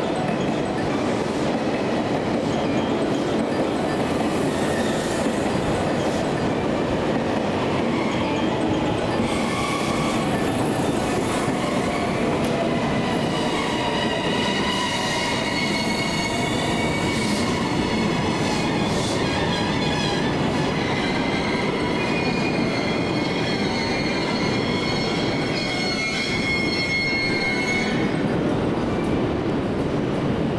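JR West 283 series tilting electric express train running into the station and slowing to a stop, with a steady rumble of wheels on rail. A high squeal joins in as it brakes, from about halfway through until shortly before it stops.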